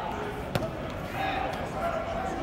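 A football smacking into a player's hands: one sharp slap about half a second in, over the chatter of voices in a large indoor practice hall.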